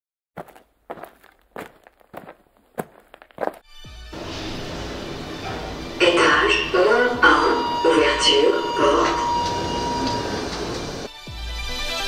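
A string of short, sharp knocks for the first few seconds, then a steady background hum with people's voices, and an electronic music track with a heavy, pulsing bass beat starting near the end.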